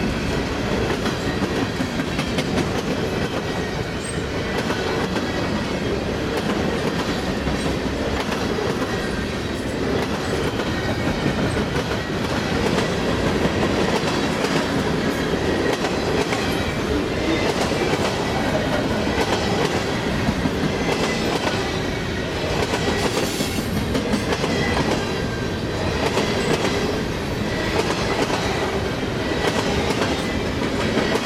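Freight cars rolling past at speed, a steady rumble of steel wheels on rail with repeated clickety-clack over the rail joints, more distinct in the second half.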